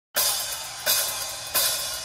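Three evenly spaced cymbal strikes on a rock drum kit, each ringing out and fading before the next, typical of a drummer's count-in to a live song.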